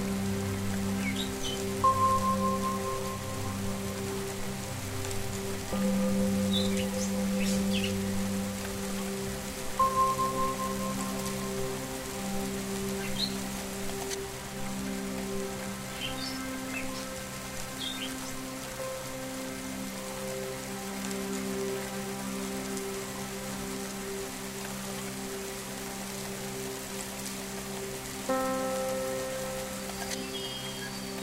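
Meditation music: soft sustained drone tones over the steady patter of rain, with a ringing bell tone struck three times and occasional short, high bird chirps.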